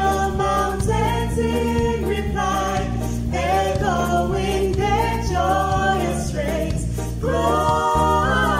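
Small mixed group of men's and women's voices singing a Christmas carol in harmony, in a ska style, over a low bass part that moves in a steady rhythm.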